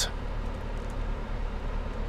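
Steady low hum of a running car heard from inside its cabin, with no sudden events.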